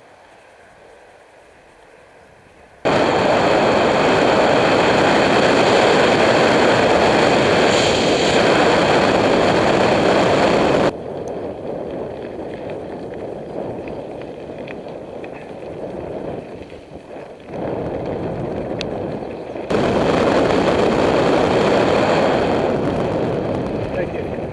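Loud rush of wind buffeting a bike-mounted camera's microphone as the mountain bike travels at speed, mixed with tyre noise on a gravel road. It starts abruptly about three seconds in, drops to a lower rush around eleven seconds, and swells again near twenty seconds.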